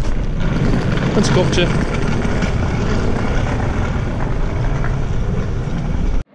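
Wind buffeting a handheld camera's microphone outdoors: a loud, steady rumble with a couple of spoken words about a second in.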